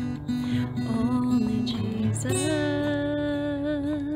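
Acoustic guitar strumming the close of a slow song, with a voice holding one long final note through the second half.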